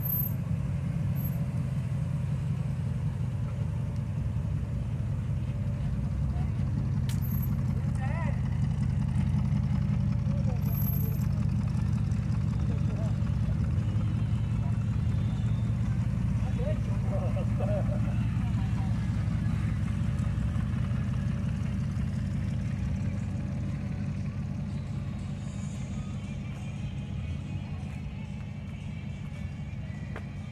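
Late-1940s Ford pickup's engine idling with a steady low rumble, fading in the last several seconds as the truck pulls away.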